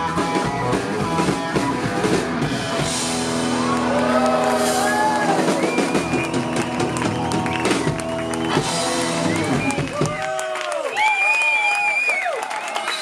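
Live country-rock band, with strummed acoustic guitar, electric bass and drums, playing the last bars of a song and stopping about ten seconds in; the crowd then cheers and whoops.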